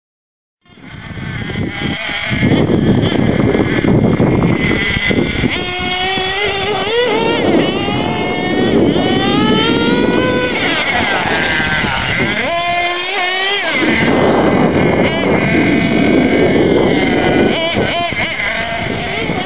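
Small nitro engine of an Ansmann Kryptonite RC truck, revving up and down repeatedly as it drives, a high whine that rises and falls over rough running noise. It starts abruptly about a second in.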